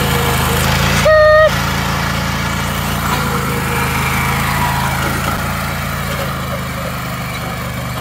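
John Deere riding lawn tractor engine running steadily as the tractor drives off towing a dump cart. About a second in comes a loud, half-second horn-like beep on one steady pitch.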